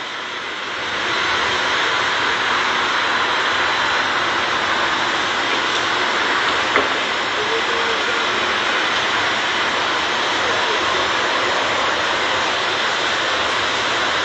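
A steady, engine-like rushing roar with no clear pitch, swelling about a second in and then holding level.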